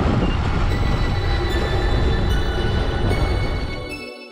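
Gravel bike rattling over cobblestones: a dense, jolting rumble of tyres and frame on the stones that fades near the end.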